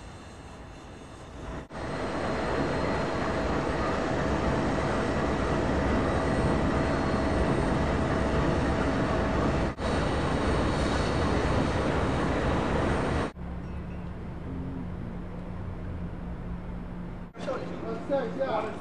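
Amtrak diesel locomotive engine running close by, a loud steady roar with a faint whine over it. About two-thirds of the way through it gives way to a quieter, steady low hum.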